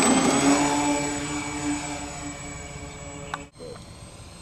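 RC cargo plane's motor and propeller running up for takeoff: a steady whine that rises slightly in pitch at the start and then fades as the plane moves off. About three and a half seconds in it cuts off abruptly, and a quieter steady hum follows.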